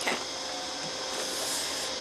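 Steady hiss with a faint high whine, unchanging and without any distinct knocks or events.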